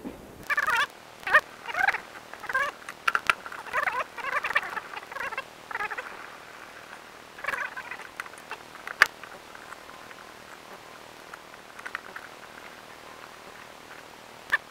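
Pneumatic impact wrench on a tractor's wheel hub nuts, rattling in a string of short bursts through the first eight seconds, with one sharp knock about nine seconds in.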